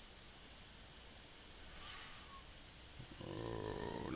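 Faint steady background hiss of the recording, with a soft breath-like swell about two seconds in. About three seconds in, a man's low, drawn-out hum begins.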